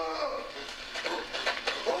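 Movie soundtrack: a high voice crying out, then a few short knocks and clatters, then a voice starting to shout near the end.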